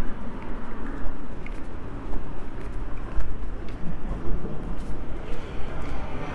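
Outdoor urban ambience: a steady low rumble under a dense hiss, rising and falling in loudness, with a few faint clicks.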